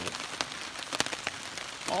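Rain falling on a silpoly hammock tarp: a steady hiss with scattered sharp drop ticks, one louder tick about a second in.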